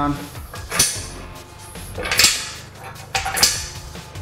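Steel clanking as the top crossbar and pins of a Rogue yoke frame are moved to lower the bar: three separate sharp metal clanks, with ringing, spaced roughly a second apart.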